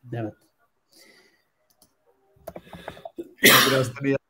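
A man's short, loud, breathy vocal burst near the end, after a brief spoken word and a stretch of near quiet.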